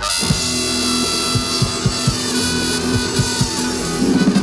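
Live band playing: trumpet coming in loudly at the start and holding a long note over electric guitar, upright bass and a steady drum beat.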